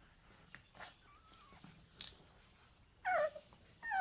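Dogue de Bordeaux puppies about three weeks old whimpering while being handled. A faint wavering squeak comes about a second in, then a loud high-pitched squeal that falls in pitch about three seconds in, and another starts just at the end.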